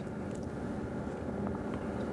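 Steady low background rumble with faint hiss: room tone.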